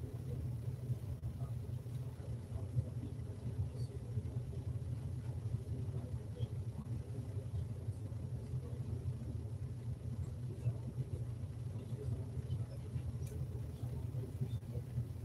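Steady low rumble of room tone with a few faint scattered clicks, no speech.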